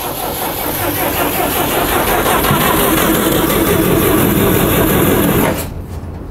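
GAZ-69's four-cylinder side-valve engine turning over, a steady dense mechanical noise that cuts off abruptly near the end.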